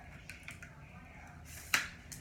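Telescoping selfie stick being pulled out to its full length: a few faint sliding clicks, then one sharp click near the end.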